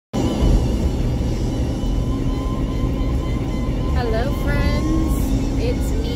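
Road noise inside a moving car's cabin: a steady low rumble from the tyres and engine, with voices or music coming in over it about four seconds in.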